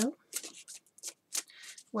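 A tarot deck being shuffled overhand by hand: a run of crisp card-on-card flicks, about three a second.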